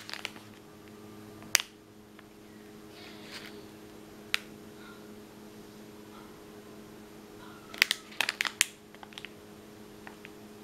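Clear plastic sleeve of a washi tape pack crinkling as it is handled: a couple of single crackles, then a quick run of crackles about eight seconds in, over a steady low hum.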